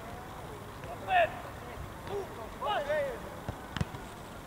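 Footballers' shouts across the pitch: one loud call about a second in and a few overlapping shorter calls around three seconds, with a single sharp thud of the ball being kicked near the end.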